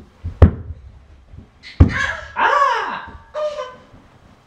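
Two loud dull thunks about a second and a half apart, like hands or feet hitting carpeted wooden stairs as a toddler climbs, followed by a short vocal sound that rises and falls in pitch and a brief second one near the end.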